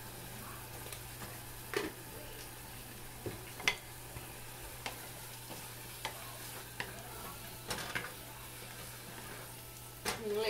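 Mushroom masala sizzling gently in a small saucepan as a wooden spatula stirs it, with scattered knocks and scrapes of the spatula against the pan, the sharpest a little before four seconds in.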